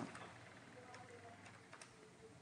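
Faint computer keyboard typing: a few soft, scattered keystroke clicks.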